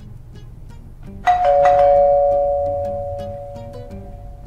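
A two-tone ding-dong doorbell chime rings once about a second in, a higher note followed by a lower one, both fading away slowly over the next couple of seconds.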